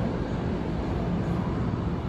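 Subway train running along the track: a steady rumble with a low hum.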